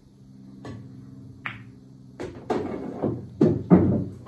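A pool shot: a soft tap of the cue tip on the cue ball, then about a second later a single sharp clack as the cue ball hits an object ball. From about two seconds in comes a run of heavier knocks and rattles, the loudest near the end, as the pocketed ball drops and rolls inside the table.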